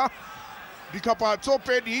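Television football commentary: a commentator speaking quickly. The speech begins about a second in, after a pause where only an even background hiss of stadium noise is heard.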